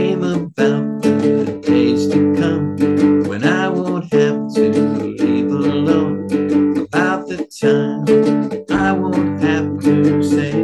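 A two-string "chugger" license-plate cigar box guitar strummed in a steady rhythm of chords, playing an instrumental passage.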